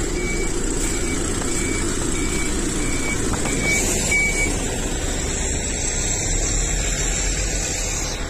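A diesel bus engine running close by, with a short electronic beep repeating about one and a half times a second that stops about four and a half seconds in.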